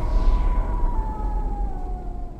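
Horror-trailer sound design: a deep rumbling drone under a thin, siren-like tone that slides slowly down in pitch.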